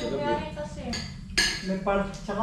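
Cutlery clinking and scraping on plates and dishes during a meal, with one sharp clink about a second and a half in, over a voice in the background.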